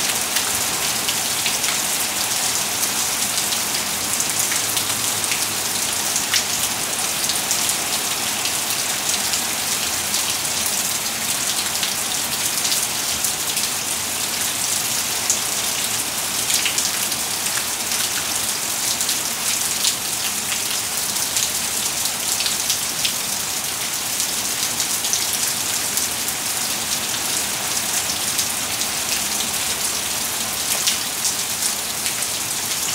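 Heavy rain falling steadily onto wet, puddled pavement: a dense, even hiss with scattered sharp ticks of close drops.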